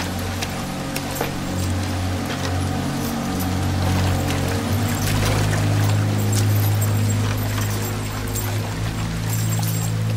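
Low, sustained film-score music whose held notes shift about halfway through, over a steady rush of pouring water with scattered knocks and clatter.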